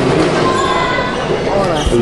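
A basketball bouncing on the sports-hall court, with a dull thud near the end, under people talking close by.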